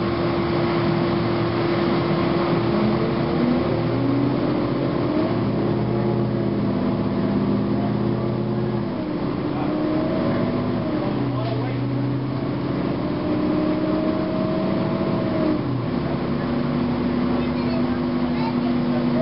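Inside a 2009 Gillig Advantage low-floor transit bus under way: its Cummins ISM inline-six diesel and Voith automatic transmission run steadily under the road noise, with whining tones that come and go and shift in pitch as the bus pulls along.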